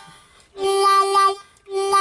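Key-of-C blues harmonica playing a steady single note in separate breaths, each note given a "wah" by the cupped hands opening from a sealed grip with a slow rotating motion. One note sounds for about a second, and the next begins near the end.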